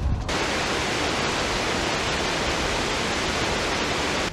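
Steady rush of water from a mountain stream in a rocky gorge, an even hiss-like noise that starts abruptly a moment in and holds without change.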